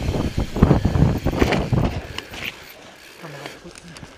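Wind noise on an action camera's microphone and a mountain bike rolling fast over a wet, rough singletrack, with knocks and rattles from the tyres and frame over bumps. The noise drops away about halfway through.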